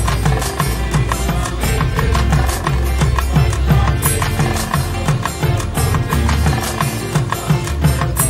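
A mixed group of singers performing a song over a backing track with a steady drum beat and deep bass.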